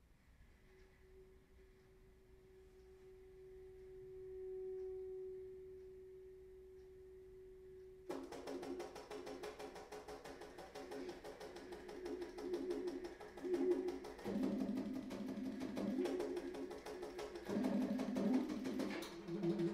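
Baritone saxophone playing a long held note that swells and then eases back slightly. About eight seconds in it breaks suddenly into a fast, rattling passage of rapid repeated notes sounding several pitches at once, dropping to lower notes near the end.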